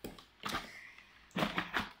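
Handling noise from a small plastic battery-powered mini washing machine for makeup sponges and brushes: a few sharp plastic clicks and knocks, one about half a second in and a quick cluster near the end.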